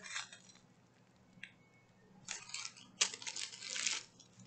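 A small zip-top plastic bag of clear rhinestone diamond-painting drills being handled: the plastic crinkles and the tiny stones clink inside it. There is a brief burst at the start, then a longer stretch from a little past two seconds on.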